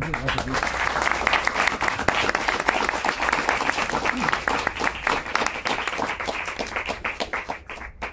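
Audience applauding: many hands clapping in a dense patter that thins out near the end.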